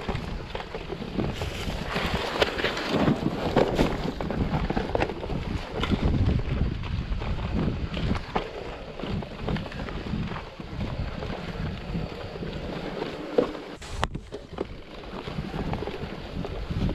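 Mountain bike rolling downhill over grassy, stony dirt, with the tyres rumbling and the bike knocking and rattling over bumps, under heavy wind noise on the microphone. The sound briefly drops away near the end.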